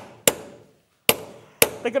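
Hand hammer striking annealed copper sheet on a metal swage block: three sharp metallic blows, each ringing briefly.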